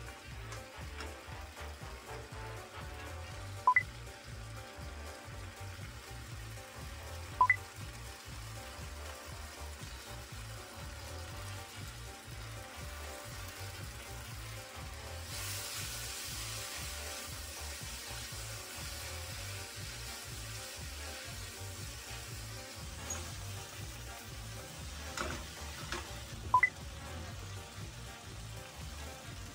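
Background music with a steady low beat over food sizzling in a frying pan as pork belly, carrots and onion are stir-fried. The sizzle grows louder for several seconds from about halfway. Three short, sharp ringing taps stand out, one near the start, one a few seconds later and one near the end.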